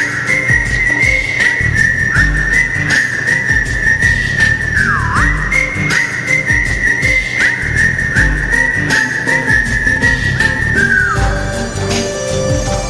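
Instrumental interlude of a karaoke backing track: a high, whistle-like melody line with quick downward dips between held notes, over a steady beat. The melody stops about a second before the end, leaving the accompaniment.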